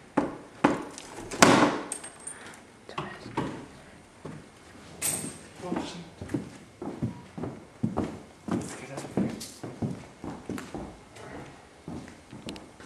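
Knocks and clatter on wood: a few loud bangs in the first two seconds, then a run of irregular thumps, two or three a second, like footsteps on a wooden floor.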